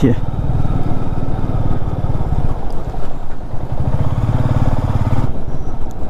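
A Royal Enfield Meteor 350's single-cylinder engine running as the bike is ridden at road speed, with a steady low pulsing. It eases briefly about two and a half seconds in, then picks up again.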